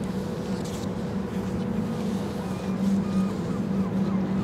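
Steady low machinery hum and rumble from the Oasis-class cruise ship Allure of the Seas passing close by, with a constant drone that grows slightly louder about three seconds in.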